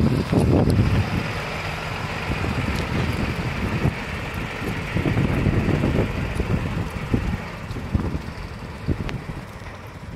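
A MAN fire engine's diesel engine pulling away and driving off, fading as it goes, with wind buffeting the microphone.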